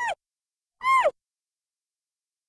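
Audio logo sting of two short pitched calls, each falling in pitch. The first is brief; the second, about a second in, is longer and louder.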